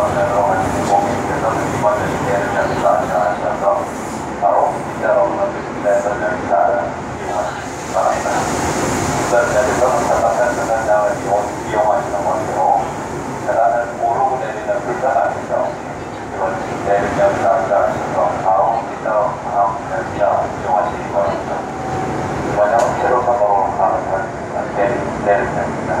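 Seoul Subway Line 2 electric train running at speed, its steady running noise heard from inside the car. Voices talking in the carriage run all through it.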